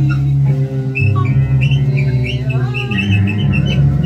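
Free-improvised ensemble music with double bass and sustained low notes. Over them runs a string of short, high chirping sounds, and a note glides upward about two and a half seconds in.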